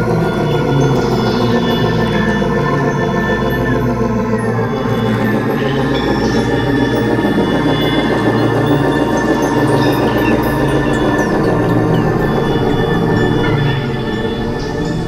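Experimental electronic synthesizer music: dense layered drones and sustained organ-like tones with no beat. A few short falling pitch glides come through around four to five seconds in, and a deep low drone drops away about eleven seconds in.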